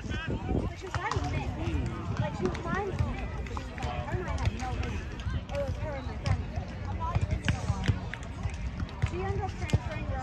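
Voices of volleyball players and spectators talking and calling out across the grass courts, no words clear, with a few sharp taps and a steady low rumble underneath.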